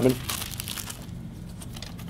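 Thin Bible pages being leafed through at a lectern: a light paper rustling in a few quick strokes during the first second, then dying away.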